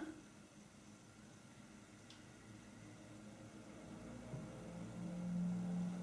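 Near silence with faint room noise, then from about four seconds in a faint, steady, low closed-mouth hum at the pitch of a woman's voice that slowly grows louder.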